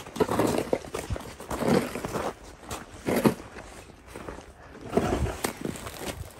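Snow shovel scraping along an icy, snow-packed footpath and scooping snow, in four separate strokes about a second and a half apart.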